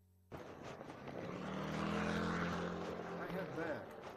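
A low, steady engine drone that builds to its loudest about two seconds in and then fades, after a brief silent dropout at the start.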